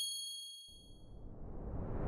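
The fading ring of a bright, high-pitched bell-like ding sound effect dies away over about a second. A rising whoosh begins to build near the end.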